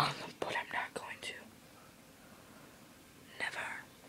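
A boy whispering for about the first second and a half, then quiet, then one short breathy sound near the end.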